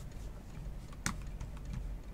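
A stack of trading cards handled in the hand: faint light taps of card edges, with one sharper click about a second in.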